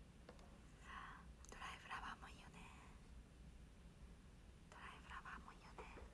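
A woman's faint whispering in two short stretches, about a second in and again near the end, with near silence around them.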